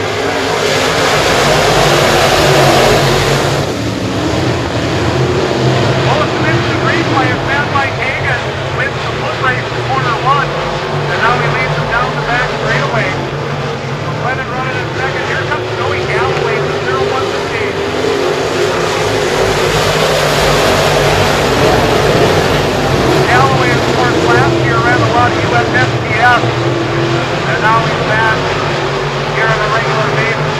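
A pack of IMCA Modified dirt-track race cars racing, their V8 engines running at full throttle together, with many short rises and falls in pitch as the cars accelerate and lift through the corners and pass by.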